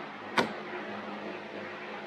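A single short click about half a second in, from hands handling the metal pitot tube against the foam wing, over a steady low hum.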